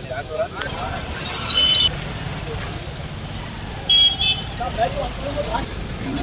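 Street ambience of people talking over a steady traffic rumble, with two short high-pitched vehicle horn toots, one about one and a half seconds in and a louder one about four seconds in.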